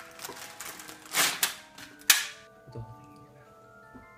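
A plastic Peeps package being crinkled and torn open, with two loud sharp crackles about one and two seconds in. From a little past halfway, music with clear ringing notes starts up.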